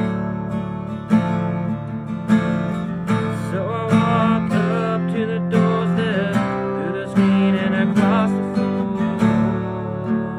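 Acoustic guitar strummed in a steady rhythm. A wordless vocal line wavers over it in the middle.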